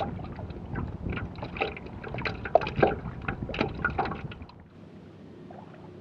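River water splashing and lapping close to a microphone riding at the waterline, irregular crackly splashes over a low wind rumble while kayaking. About four and a half seconds in it drops suddenly to a quieter steady hiss.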